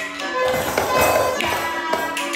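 Music playing while a group of children tap small hand drums and shake jingle bells along with it. There are repeated taps, with a stretch of jingling in the middle.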